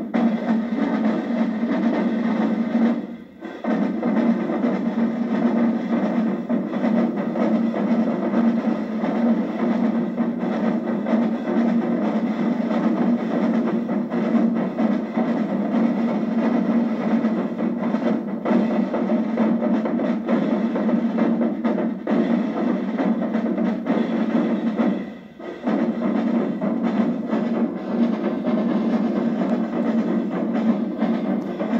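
Marching drumline of snare drums with a bass drum playing a continuous cadence, breaking off for a moment twice: about three seconds in and again about 25 seconds in.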